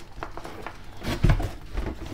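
Cardboard boxes being handled: a gift box sliding and rubbing against the inside of a larger cardboard box, with light scrapes and clicks and a dull thump a little over a second in.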